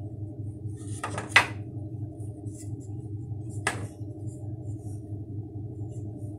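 Hands handling the wool warp threads and wooden sticks of a Mapuche loom, giving three light knocks or clicks, two close together about a second in and one near the middle, over a steady low hum.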